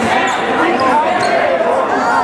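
Dodgeball game in a gymnasium: players' overlapping shouts and calls in the hall, with rubber dodgeballs bouncing on the wooden court.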